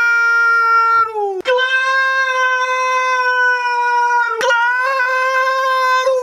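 A man's long, loud, high-pitched yell held on one steady pitch, broken by a short gasp about a second and a half in and a brief break about four and a half seconds in, then held again.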